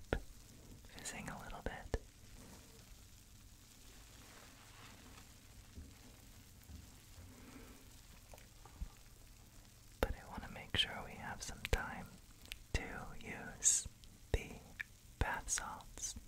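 Soft whispering, mostly in the second half, over a faint crackling fizz of bath bubbles, with a few sharp clicks.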